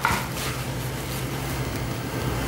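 Steady low hum over an even hiss of room noise, with no distinct events.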